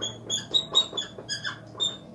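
A dry-erase marker squeaking on a whiteboard as letters are written, about seven short, high squeaks, one for each pen stroke.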